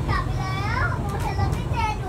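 A young child's high-pitched voice calling out in several short, excited utterances that rise and fall in pitch, over the steady low rumble of the Bombardier Innovia Monorail 300 train running.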